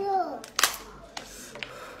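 Cooked lobster shell cracked open by hand: one sharp, loud crack about half a second in, followed by a couple of smaller snaps.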